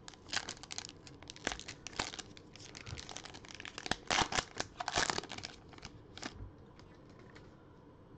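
A trading-card pack's plastic wrapper crinkling and tearing as gloved hands pull it open: a run of sharp crackles, loudest about four to five seconds in.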